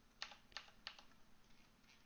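Faint computer keyboard key presses: about three separate clicks in the first second, then one more near the end.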